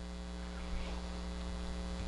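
Steady electrical mains hum: one low, unchanging pitch with a stack of evenly spaced overtones, heard in a gap between spoken phrases.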